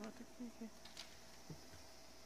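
Near silence: room tone with a faint steady hum, faint low voice-like sounds in the first half second, and a couple of soft ticks after.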